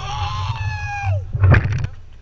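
A young man's long, high-pitched celebratory yell that falls away after about a second, followed by a single sharp knock about a second and a half in.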